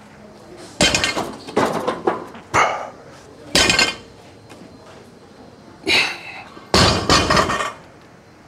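Loaded barbell with bumper plates being lifted and set down on a rubber lifting platform during a set of deadlifts: a series of about six heavy thuds and clanks, the last one longer.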